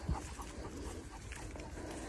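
A Cane Corso panting faintly, under a low wind rumble on the microphone.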